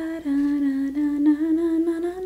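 A woman humming a slow tune in long held notes that step up and down between a few pitches.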